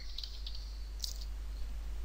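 A few soft clicks of computer keyboard keys as a word is typed, over a low steady hum.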